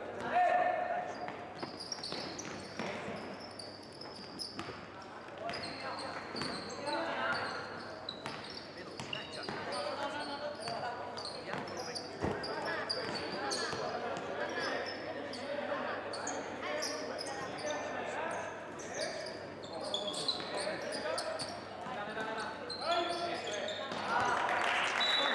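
Live sound of a youth basketball game in a large, echoing gym: the ball bouncing on the hardwood and voices of players and coaches calling out. Short high squeaks run throughout, typical of sneakers on the court, and there is one sharp thud about halfway through.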